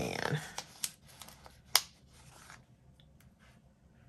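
A paper sticker sheet being handled and a small sticker peeled off it and pressed onto a planner page: a few light, sharp clicks and rustles of paper in the first two seconds.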